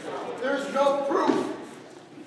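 A man's voice: a short, loud vocal outburst without clear words, lasting about a second.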